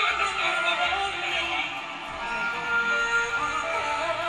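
A woman singing a slow pop ballad live with band accompaniment, holding long notes.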